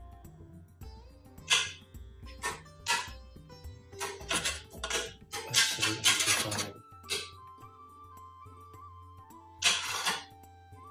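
Thick curry sauce bubbling in a pan, popping in irregular short bursts, the busiest spell about halfway through and another near the end, over steady background music.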